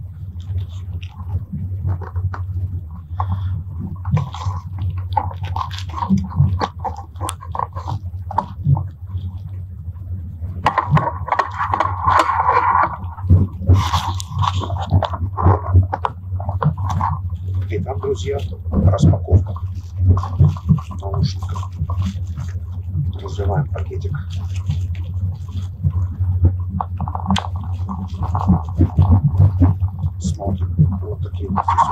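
Steady low running rumble inside a Strizh high-speed train carriage, with repeated crackling and clicking as a plastic packet of earphones is handled and opened, and indistinct voices at times.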